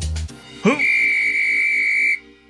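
Police whistle blown in one long, steady, high-pitched blast that starts just under a second in and cuts off sharply, over soft background music.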